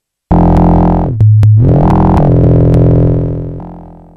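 Elektron Machinedrum UW playing a low, buzzy FM synth tone made with an LFO as the modulator. It starts about a third of a second in, jumps in pitch with a few clicks around a second in, then holds and fades out. It is unfiltered and sounds a little rough.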